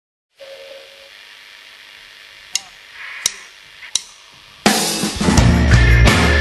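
A faint hum with three sharp clicks at an even beat, then a live rock band comes in loudly with drum kit, cymbals and heavy bass about three-quarters of the way through.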